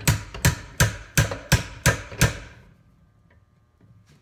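Hammer tapping on pliers that grip a .50 BMG bullet held by its brass case in a bench vise: about seven quick strikes at roughly three a second, stopping about two and a half seconds in. The blows are meant to knock the bullet loose from the case, which has not yet let go.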